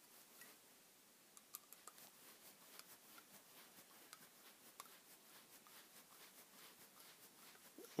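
Near silence with faint, scattered small clicks and ticks of a hex driver turning a half-threaded screw into a plastic RC car suspension arm, with light handling of the parts.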